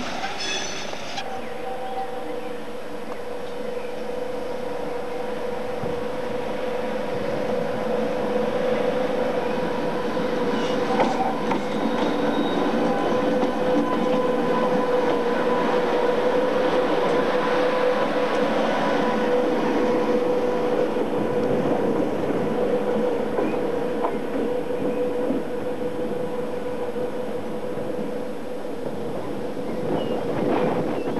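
A train passing close by: rail-wheel rumble with a steady high whine, growing louder towards the middle and easing off near the end.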